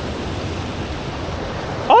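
Steady rush of water pouring over a flooded spillway, an even hiss with no distinct pitch.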